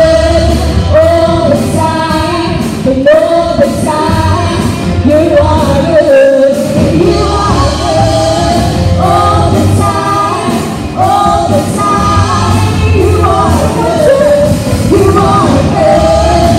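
A live band playing a worship song, with a woman singing lead over electric guitar, keyboard and bass. The bass drops out briefly about six seconds in.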